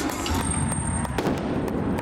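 Indoor arena pyrotechnics going off as a rapid run of sharp pops and crackles over loud, dense background noise.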